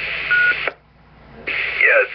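A 2-meter FM amateur repeater's courtesy beep, one short steady tone over the open carrier's hiss, heard through a scanner's speaker after the last speaker unkeys. The hiss cuts off suddenly as the carrier drops and the squelch closes. Under a second later a new carrier opens with hiss as the next station keys up.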